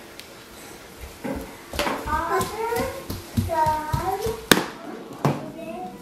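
Toddler babbling in short high-pitched bursts, with a few sharp knocks of a plastic sippy cup on a wood floor, the loudest about four and a half seconds in.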